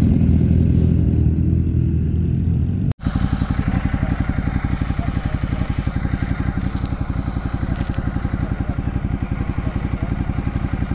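Motorcycle engine running with its pitch slowly rising. After a sudden cut about three seconds in, a motorcycle engine idles with an even, rapid pulse.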